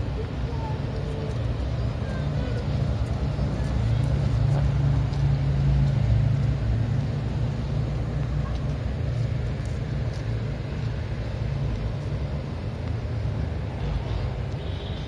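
A low, steady engine rumble with outdoor traffic-like noise, swelling for a few seconds around the middle.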